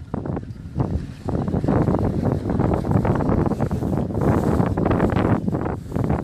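Wind buffeting the microphone: a loud, gusty rumble.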